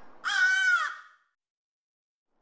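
A crow cawing once, a single harsh call under a second long near the start.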